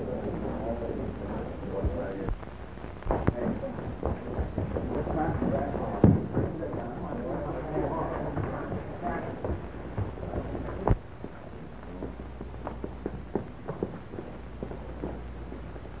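Indistinct voices of several people talking, with scattered knocks and bumps over a steady low hum. The sharpest knock comes about six seconds in and another near eleven seconds.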